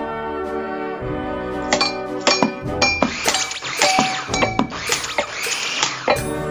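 Band music with held brass chords. From about two seconds in, a busy clatter of clinks and short rings from glassware and kitchen objects being struck is layered over it.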